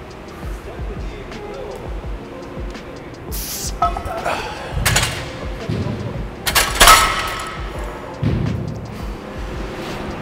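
Background music with a steady beat, broken by a few sharp clanks of a loaded barbell and its iron plates in a squat rack, the loudest about seven seconds in with a brief metallic ring.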